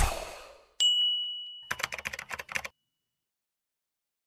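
Outro logo sound effects: the previous sound fades out, then a single bright ding rings out about a second in and dies away, followed by about a second of rapid keyboard-typing clicks.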